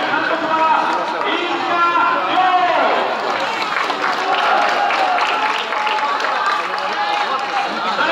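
People's voices talking throughout, several at once, with no other sound standing out.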